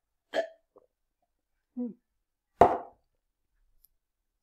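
A person swallowing mouthfuls of juice from a glass, with a short murmured "mm" of approval about two seconds in, then one sharp, louder sound a little later.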